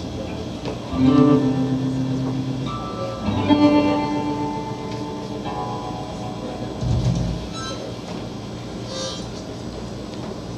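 Live guitar playing a slow, sparse intro: chords struck about a second in and again around three and a half seconds, each left to ring and fade, with a low thump near seven seconds.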